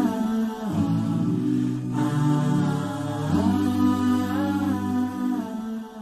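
Intro music of unaccompanied voices humming long held notes that shift in pitch now and then, starting to fade near the end.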